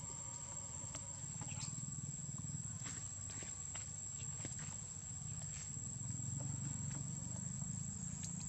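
Quiet outdoor ambience: a steady high-pitched insect drone over a low rumble, with scattered faint clicks.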